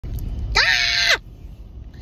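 A short high-pitched vocal squeal, about half a second long, that rises, holds and falls in pitch, over a low rumble inside a car.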